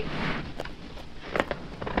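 Footsteps sound effect of someone hurrying: a few quick, soft, separate steps after a brief rustle.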